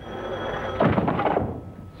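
A 1940s desk telephone's bell ringing, then the handset being lifted off its cradle with a clatter about a second in.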